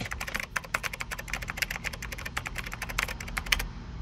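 A quick, irregular run of small clicks and taps, several to the second, that stops shortly before the end, over a faint low steady rumble.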